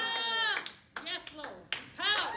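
Quieter voices of people in the room calling out, with a few sharp hand claps in the second half.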